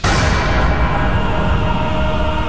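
Tense, ominous drama score: a sudden loud hit at the start over a deep rumble, then sustained held notes.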